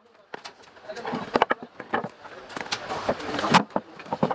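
Wooden mallet knocking on a cricket bat's handle: a few sharp, irregular knocks, the loudest near the end, with voices alongside.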